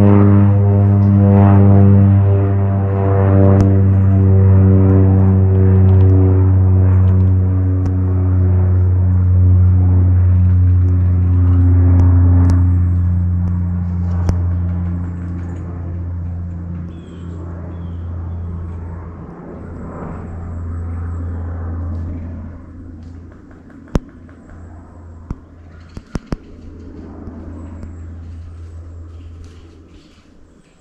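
A deep, gong-like tone struck once, ringing with many overtones and slowly fading away over about twenty seconds. Faint outdoor sound with a few sharp clicks follows near the end.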